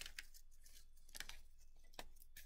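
Faint rustle of a paper lunch bag being handled, with a few soft clicks, as yarn is threaded through a punched hole, over a low steady hum.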